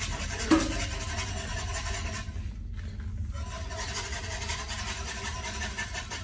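Wire whisk scraping and rattling against the inside of a cast-iron Dutch oven while stirring liquid, with one sharp knock about half a second in. A steady low hum sits underneath.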